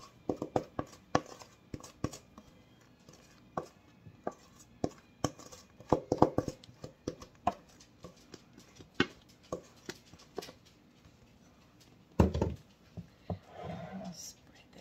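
Batter being scraped out of a metal mixing bowl into a glass loaf pan: a run of short clicks and knocks of a utensil against the bowl, busiest midway, then one louder thump near the end.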